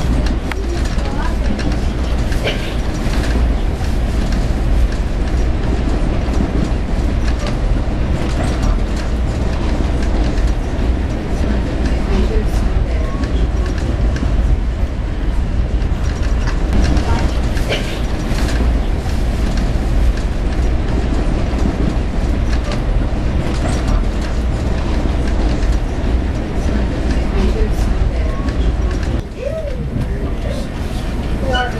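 Steady low rumble of an Amtrak Southwest Chief passenger car running on the rails, heard from inside the car, with scattered clicks.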